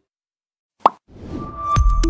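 A moment of silence, then a single short 'plop' sound effect, followed by a rising whoosh. New electronic music with a low thump starts near the end, as the broadcast's outro ident begins.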